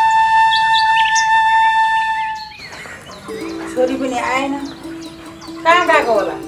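A flute melody, ending on one long held note, that cuts off about two and a half seconds in. Then birds chirp in two quick runs of calls over a steady low tone.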